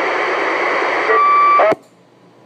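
Galaxy CB radio putting out loud static hiss after a station's voice stops, with a steady whistle coming in just past the middle. About 1.7 s in, it cuts off with a click and falls to a faint background hiss as the transmission ends.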